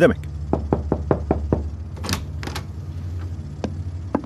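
A quick run of about six light knocks, then a few sharper clicks and taps.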